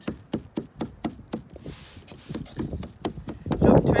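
Quick, repeated taps of a tined, wooden-handled felting tool jabbed into wet wool fleece laid over bubble wrap, a few strokes a second, to drive the fibres together. A short spray-bottle hiss comes about two seconds in.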